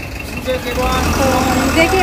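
Steady low rumble of city street traffic, with voices talking over it.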